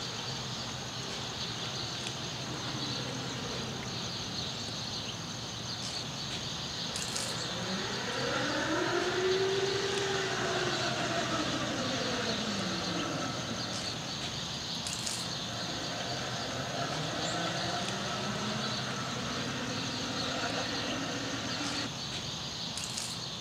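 Electric-converted Ford F-150 driving past: the whine of its UQM permanent-magnet motor and single-speed planetary gearbox rises and then falls in pitch over several seconds about a third of the way in, with tyre noise. A fainter rise and fall follows near the end. A steady high insect buzz runs underneath throughout.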